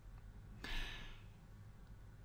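A faint breath taken into the microphone, starting a little over half a second in and fading away over about half a second, over quiet room tone.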